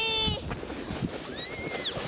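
Young children on a towed snow saucer calling out: a drawn-out 'whoa' that falls away at the start, then a short high-pitched squeal about a second and a half in. Underneath is a steady scraping hiss of the saucer being pulled over packed snow.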